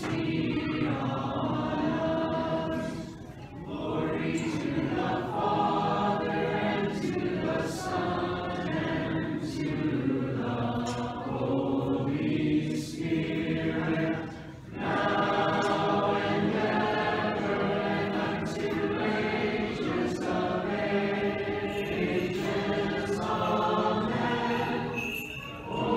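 Church choir singing an Orthodox liturgical hymn in several voice parts, in long phrases with brief pauses about three seconds in and again near the middle.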